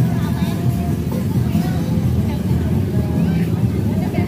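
Motorbike engines running at low speed as several bikes roll past, with people's voices over them.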